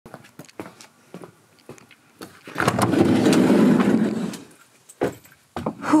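A few light footsteps of boots on concrete paving stones, then about two seconds of loud rumbling noise that fades out, and a thump near the end.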